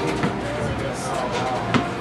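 Indistinct chatter of several people's voices, with a single sharp knock about three-quarters of the way through.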